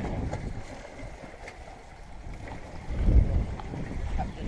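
Wind buffeting the camera microphone at the water's edge, with small lake waves lapping against shoreline rocks. A strong gust swells the low rumble about three seconds in.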